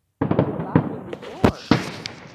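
Fireworks going off: a rapid run of cracks and pops starts suddenly, then two loud bangs about a quarter second apart near the end.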